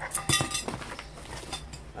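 Light clinks and knocks of painting supplies being handled, mostly in the first second.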